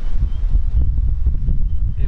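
Wind buffeting an outdoor microphone: a loud, uneven low rumble.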